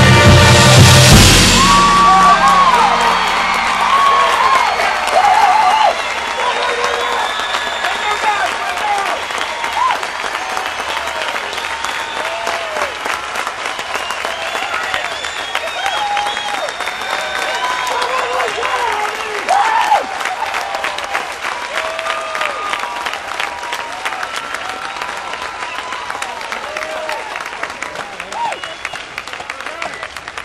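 A marching band's closing chord cuts off about a second in, and the stadium crowd breaks into applause and cheering with shouts and whistles that slowly die down.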